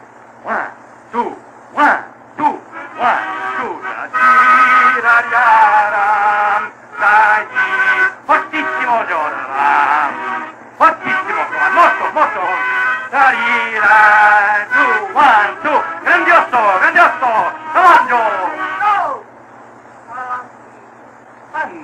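A solo melody performed clumsily, with sliding, wavering pitches and frequent short breaks, on an old disc recording with a steady low hum. It is a poor rendition of a classical piece, called ruining the work of a great musician.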